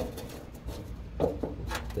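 A short click, then light rubbing and handling noise as a replacement starter solenoid is held and shifted against the truck's fender to line up its bolt holes.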